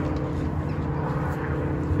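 An engine running steadily nearby, a constant low drone with no change in pitch.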